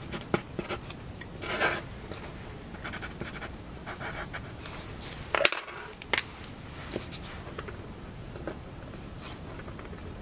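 Blue pencil scratching on paper in quick sketching strokes. A little past halfway come two sharp clicks as the pencil is put down on the wooden desk and a pen is picked up, followed by only faint light marks.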